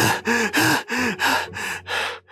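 Voice actors panting hard, out of breath from running: a quick run of gasping breaths, about three a second, some with a slight voiced catch.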